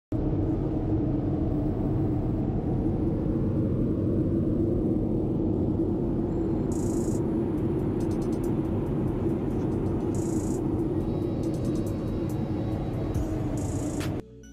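Steady drone of a jet airliner's cabin in cruise: turbofan engine and airflow noise heard from inside the cabin, constant and low.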